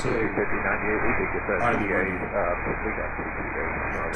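A pilot's voice over air-traffic-control radio, thin and narrow with a steady hiss beneath it.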